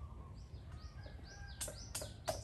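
Small birds chirping faintly, a run of short repeated chirps over a low steady background rumble, with two sharp clicks near the end.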